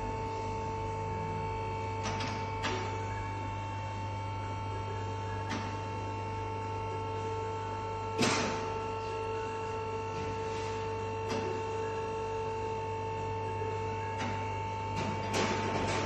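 Steady electrical hum made of two held tones over a low drone, broken by scattered sharp clicks and knocks, the loudest about eight seconds in.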